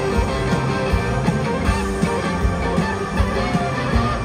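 Live rock band playing an instrumental passage: electric guitars, bass guitar and drums, over a steady drum beat of nearly three beats a second.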